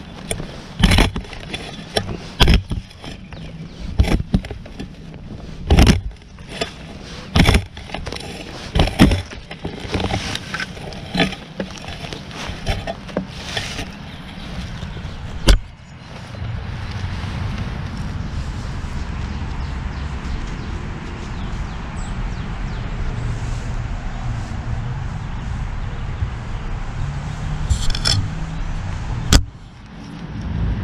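Shovel blade heard up close, driven repeatedly into lawn soil and roots: a run of sharp, irregular crunching chops for roughly the first fifteen seconds. After that comes a steady low rumble.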